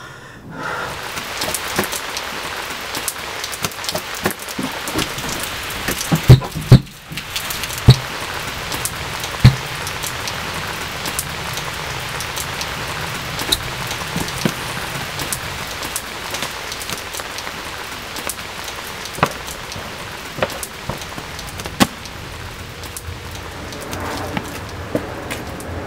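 Steady rain, with scattered sharp knocks and drops; the loudest come in a cluster a few seconds in.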